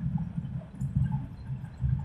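Low, uneven rumble of city street background noise, picked up on a phone's microphone.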